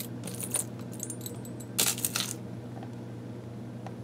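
Small metal charms and beads clinking as a hand rummages through a compartment tray, in two short bursts, about half a second in and a louder one about two seconds in.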